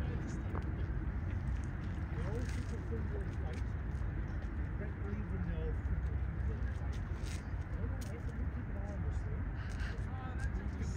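Steady low rumble of a Qantas Airbus A380-841's four Rolls-Royce Trent 970 engines as the jet climbs away after takeoff, with indistinct voices in the background.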